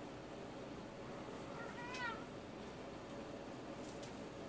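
A kitten gives one short, high-pitched mew about two seconds in.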